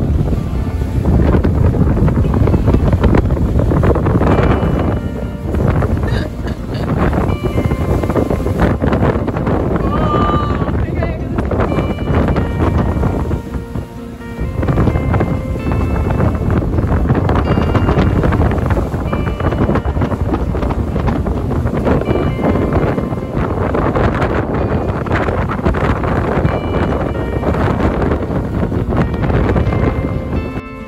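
Strong wind buffeting the microphone on the deck of a catamaran in a 35-knot blow, a heavy, gusty low roar that dips briefly a couple of times. A music track plays faintly underneath.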